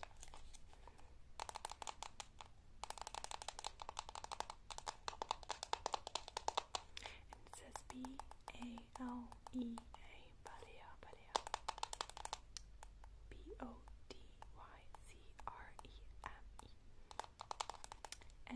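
Long acrylic fake nails tapping rapidly on the plastic lid and sides of a body cream tub, a quick run of light clicks. The tapping comes in bursts, with pauses between them.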